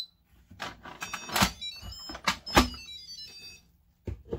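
Electric pressure cooker lid being turned and lifted off, with two loud clunks and several lighter knocks. Behind them the cooker plays a short electronic jingle of stepping tones.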